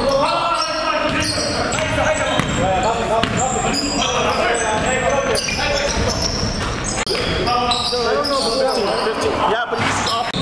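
Basketball being dribbled on a hardwood gym floor with repeated bounces, sneakers squeaking, and players' voices echoing in the hall.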